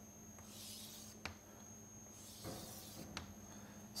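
Chalk scraping on a chalkboard in two faint strokes as a curve is drawn, with a light tap about a second in. A faint steady hum lies underneath.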